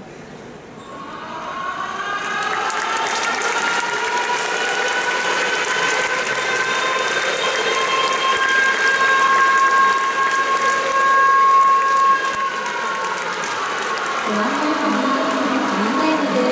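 Game-end siren of a Japanese high school baseball game: a long wail that rises about a second in, holds one steady pitch, and sinks away in the last few seconds, over crowd applause.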